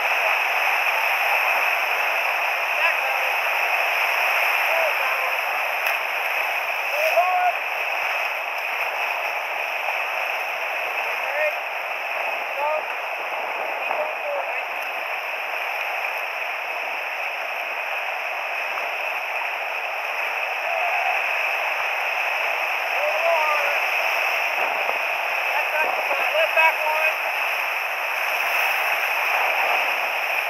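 Steady rush of whitewater rapids churning around a raft, with small splashes now and then.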